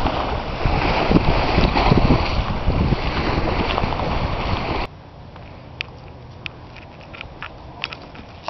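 Wind buffeting the microphone over small waves breaking and washing on a rocky shoreline. About five seconds in it cuts off abruptly to a much quieter background with a few short, high clicks.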